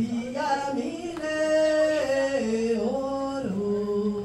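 A woman singing a short melody in long held notes that step up and down in pitch.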